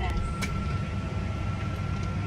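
Steady airliner cabin noise: a low rumble from the engines and airflow, with a thin, steady whine running through it and faint voices of other passengers.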